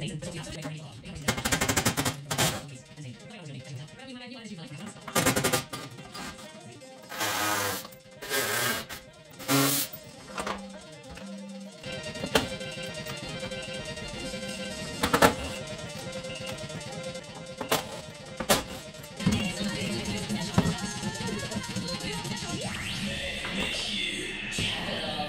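Short rattling bursts of a cordless impact gun running bolts out of the van's front end, about six in the first ten seconds. Background music comes in about halfway, over light clatter of parts being handled.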